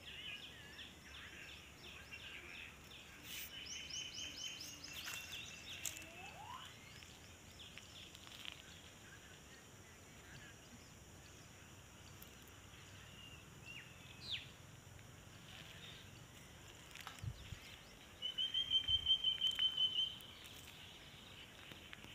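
Quiet outdoor ambience with scattered high bird chirps. Near the end comes the loudest sound: a rapid series of high-pitched notes, about five a second, lasting about two seconds.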